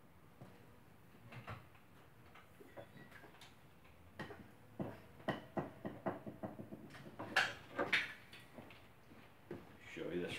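Scattered faint clicks and knocks, turning into a busier run of knocks and clatter in the second half: someone out of view rummaging for and picking up a tool.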